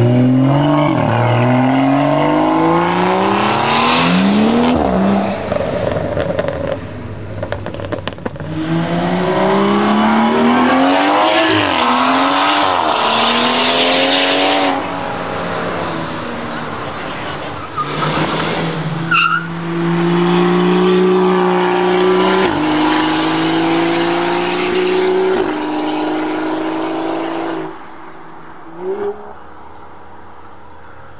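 Modified BMW M135i's turbocharged straight-six, with a big turbo and a valved iPE exhaust, accelerating hard in several runs one after another: the engine note climbs through the revs and drops back at each upshift.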